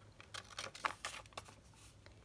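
Soft paper rustling with a few light ticks as a paper pocket is handled, lined up and pressed flat onto a journal page.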